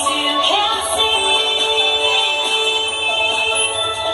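Recorded pop song playing, a singing voice gliding up about half a second in and then holding long notes over the backing music.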